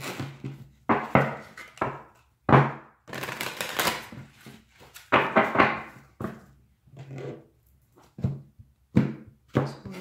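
Tarot cards being shuffled by hand: a string of sharp card slaps and rustles, some brief and some drawn out for about a second, with thunks as the deck meets the table.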